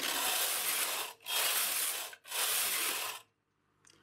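Domestic knitting machine carriage pushed back and forth across the metal needle bed three times, knitting three straight rows. Each pass is a steady rasping whir lasting about a second, with a brief pause at each turn, and it stops a little after three seconds in.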